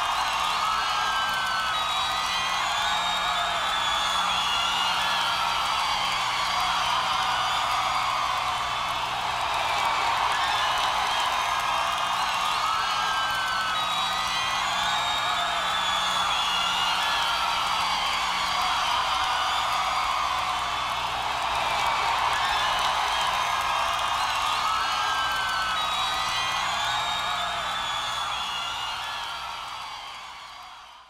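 Live rock concert sound: music with a crowd cheering and whooping, in a dense, steady wash that fades out at the very end.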